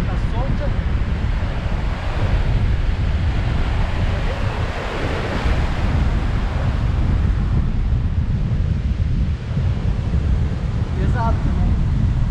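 Heavy surf breaking and washing against a pier, with strong wind buffeting the microphone in a steady deep rumble.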